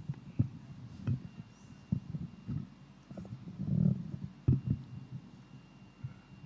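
Handling noise on a lectern microphone: a handful of irregular low thumps and knocks, with one longer dull rumble near the middle.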